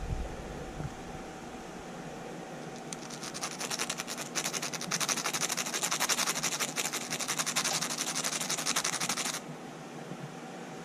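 A nail file rasping in quick, rapid strokes against a guinea pig's upper front teeth, filing them down; the filing starts about three seconds in and stops abruptly about a second before the end.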